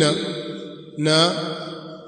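A man's voice speaking in a drawn-out, sing-song way. He holds two long syllables, and the second starts about a second in.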